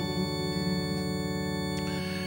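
Electronic keyboard holding one sustained chord, its tones steady.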